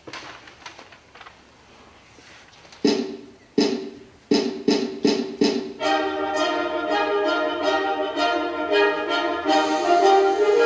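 Wind band music with brass. It opens with a few loud accented chords about three seconds in, then a run of quicker hits, and settles into sustained full-band chords from about six seconds in.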